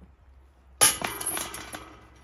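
A disc golf disc strikes the chains of a metal chain basket about a second in: a sudden loud clash, then the chains jangle and ring, dying away over about a second as the disc drops into the basket.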